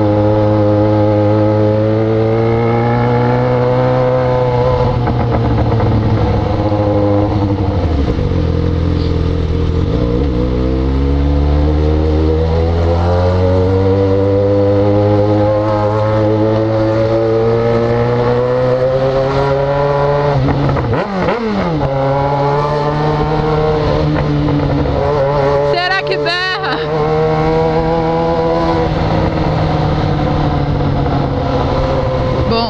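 Yamaha XJ6's inline-four engine running under way, its note rising and falling with the throttle. The pitch sinks around eight to eleven seconds in as the bike eases off, then climbs again. It dips sharply for a moment about 21 seconds in before picking back up.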